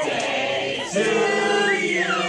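Men's chorus singing in harmony: held chords, with a voice sliding down in pitch near the end.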